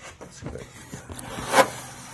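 Light rustling and small knocks of a hand moving among parts in a car's engine bay, with one sharper click about one and a half seconds in.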